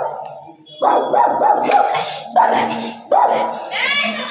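A dog barking in several loud bursts, starting about a second in.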